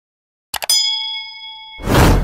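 Subscribe-button animation sound effect: two quick mouse clicks about half a second in, then a bell ding that rings for about a second. Near the end a loud whoosh swells up and cuts the ding off.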